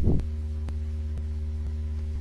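Steady low electrical hum, like mains hum, with faint ticks about twice a second and a short blip at the start.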